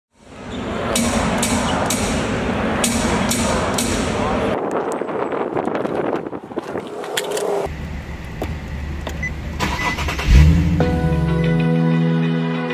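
Car sounds: a loud noisy rush with sharp clicks for the first few seconds, then quieter handling clicks as a car door is opened. A low engine hum follows, with a loud burst about ten seconds in as the engine starts. Music begins near the end.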